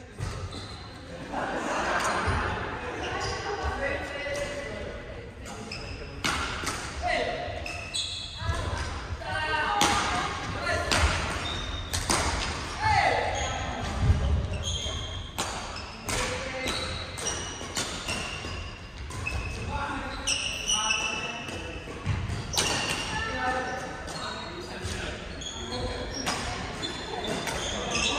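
Badminton rackets striking a shuttlecock over and over in rallies, with footsteps and shoes squeaking on the wooden gym floor, echoing in a large hall.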